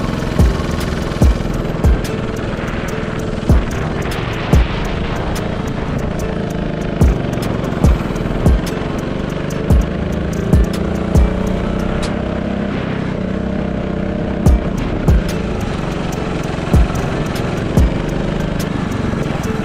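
UK drill instrumental beat, with deep bass kicks falling in an uneven pattern over fast hi-hat ticks. Under it runs a racing go-kart's engine, its pitch rising and falling with the throttle through the laps.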